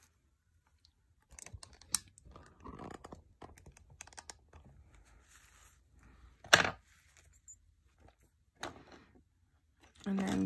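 Freshly quenched silver chain being rubbed dry in a terry-cloth towel: soft cloth rubbing and small metal clicks, with one sharp, louder click about six and a half seconds in.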